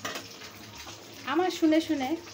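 Hot oil sizzling steadily around whole boiled eggs frying in a pan. A voice speaks briefly near the end.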